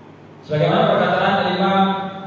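A man's voice chanting a recitation, one long held phrase on a steady pitch that starts about half a second in.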